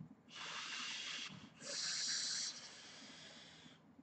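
A long hissing draw through a freshly juiced rebuildable atomiser on a vape mod as the 0.14-ohm coil build is fired for its first hit. It comes in two pulls, a shorter one and then a louder, higher one that tails off.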